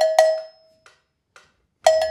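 Handheld cowbell struck with a wooden drumstick: two hits at the start, two faint taps in between, then another hit near the end, each hit ringing briefly.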